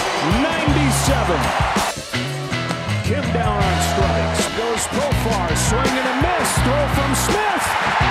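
Background music with a bass line and a regular high percussion beat, with voices from the game broadcast mixed in underneath; the sound drops briefly about two seconds in.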